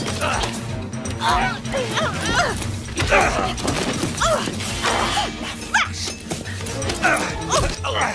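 Film soundtrack: music with sustained low tones under short wordless vocal cries and exclamations, with a few sharp knocks.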